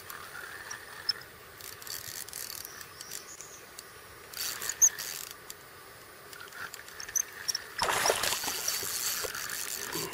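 Water sloshing and splashing against a kayak in three short bursts, the loudest near the end, with a few faint clicks between.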